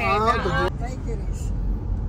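Steady low rumble of a car's engine and road noise, heard from inside the cabin while driving. A voice is heard briefly in the first moment.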